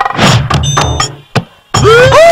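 Comedy background music cue with sharp percussive knocks and a thud, and a sliding tone near the end that rises and then falls.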